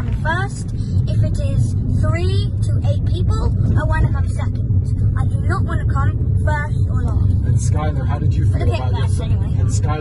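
Steady low rumble of a car on the move, heard from inside the cabin, with a child's voice talking over it.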